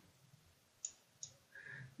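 Near silence with two faint, quick computer-mouse clicks a little under a second in, about half a second apart.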